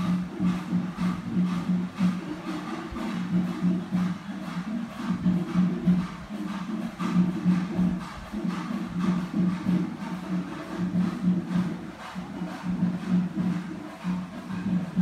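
Music with a steady, fast beat over a repeating low tone.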